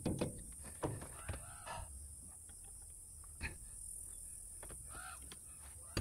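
Quiet outdoor ambience: a steady high hiss with a few faint clicks and a couple of faint chirping calls.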